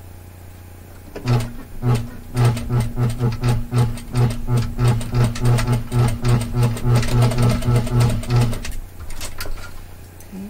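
Industrial single-needle lockstitch sewing machine stitching stretch fold-over binding at a slow, even pace: a steady hum with a regular beat of about four stitches a second. It starts about a second in, pauses briefly just after, then runs on and stops near the end.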